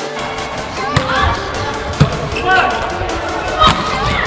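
A volleyball being struck hard by hand three times in one rally: the serve about a second in, a pass about two seconds in, and an attack into the block near the end, each a sharp slap over steady arena noise.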